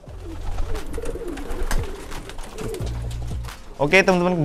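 Domestic pigeons cooing, several short low calls repeating throughout.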